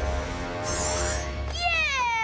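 Cartoon soundtrack: a low rumble under music, with a short high shimmer in the middle, then about one and a half seconds in a loud drawn-out cry that slides down in pitch.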